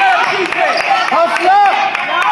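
Basketball game sounds: sneakers squeaking on the hardwood court in short rising-and-falling chirps, with a few knocks of a basketball bouncing.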